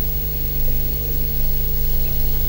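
Steady low electrical hum on the audio line, a few fixed tones held without change.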